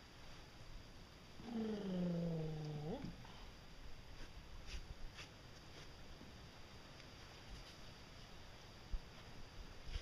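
A man's drawn-out grunt of effort, about a second and a half long and falling in pitch, as he hauls himself up onto a concrete tank, followed by a few faint taps and a soft thump near the end.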